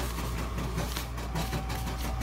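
A steady low hum under faint rustling of a nylon jacket's fabric as it is handled.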